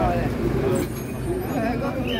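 Voices talking close by over the low, steady rumble of a slow-moving motorized procession float's engine.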